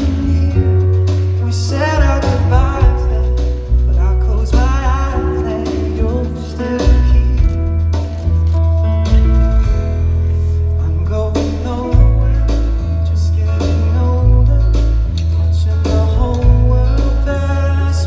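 A live pop song: a male voice sings a slow melody over strummed acoustic guitar and a loud, deep bass line that steps from note to note.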